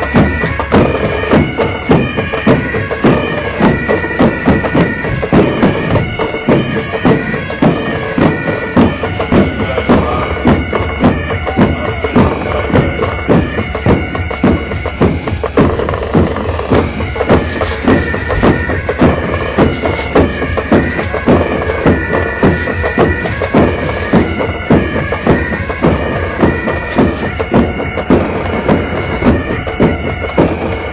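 Military pipe band playing a march: bagpipes sounding a steady drone and melody over snare and bass drums beating a regular marching rhythm.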